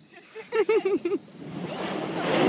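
A person laughing, four quick "ha" pulses about half a second in. Near the end a rushing roar starts to build as Mount Yasur's vent blasts out ash, gas and glowing lava.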